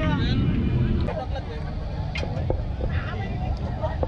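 Voices chattering over a steady low rumble, with a short burst of nearer speech at the start and a few small clicks.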